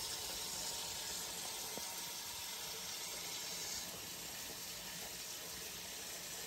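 Steady rush of running water in a room of aquariums.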